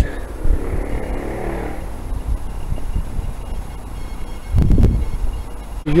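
Wind buffeting the camera microphone: an uneven low rumble, with a stronger gust about four and a half seconds in.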